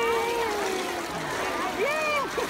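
A long, drawn-out high-pitched vocal call falling steadily in pitch, dying away about a second in, over the splashing and lapping of pool water. A short rising-and-falling voice note comes near the end.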